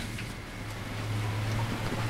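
A sharp click at the start, then a steady low hum under an even hiss of rain that grows louder.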